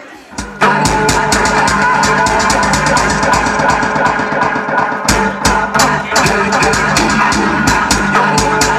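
Dance music with a steady kick-drum beat, mixed live by a DJ on Pioneer CDJ decks and a mixer. The music is nearly gone at the start and drops back in at full level about half a second in, with heavier bass from about five seconds in.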